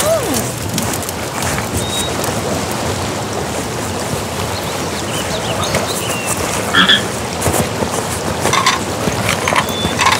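Steady rushing water of a waterfall, with scattered small clicks, and a frog croaking.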